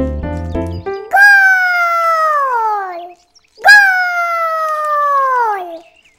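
A short stretch of background music cuts off about a second in, then a cartoon character's voice calls out twice, two long drawn-out calls, each sliding slowly down in pitch.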